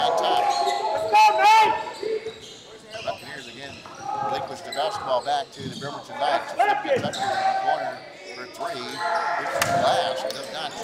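Basketball bouncing on a hardwood gym floor during live play, with sneakers squeaking in short chirps and voices, all echoing in the gym.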